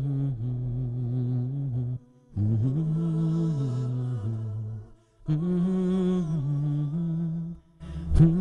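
Low male voice humming a slow a cappella melody, in three held phrases of two to three seconds broken by short pauses.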